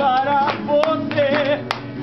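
A birthday song sung in Portuguese, the voice holding long, wavering notes, with a few sharp hand claps from the table in time with it.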